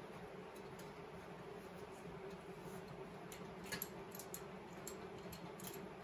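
Faint metallic clicks and ticks of a 14 mm wrench working a motor mount bolt, scattered through the second half, over a steady low hum.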